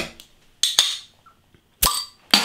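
Bottle opener prising the crown cap off a bottle of Belgian blonde ale: a brief hissy rustle about half a second in, then a sharp pop as the cap comes off near the end.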